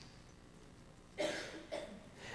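A single short cough a little over a second in.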